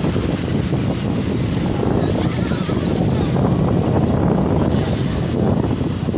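Wind rushing over the microphone of a motorcycle on the move, with engine and road noise underneath; a steady, dense low noise.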